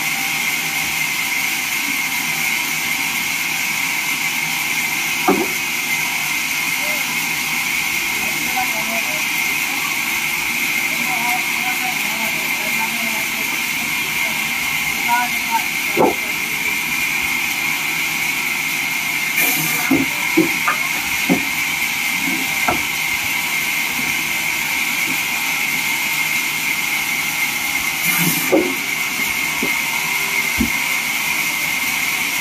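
Vertical band sawmill running steadily with a high, even hiss. A few sharp wooden knocks come at intervals as timber slabs and planks are handled and dropped.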